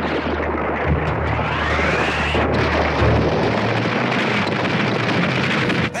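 Loud, continuous rumbling sound effect from an animated cartoon, with a rising whoosh about a second in.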